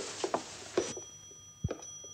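Faint scattered knocks and a soft low thump a little past halfway, over a light hiss.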